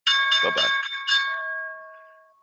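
A bell-like chime: a quick run of ringing strikes in the first second or so, then the tones ring on and fade away.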